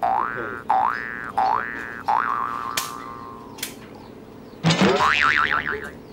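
Comic cartoon sound effects: four quick rising boings about two-thirds of a second apart, the last trailing off, then near the end a louder rising boing whose pitch wobbles up and down.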